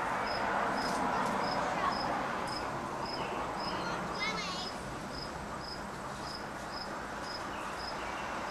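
An insect chirping steadily and evenly, about two high chirps a second.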